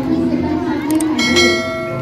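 A bell-chime sound effect from a subscribe-button overlay: a quick click, then about a second in a bright struck ring with many overtones that fades away. Voices and background music continue underneath.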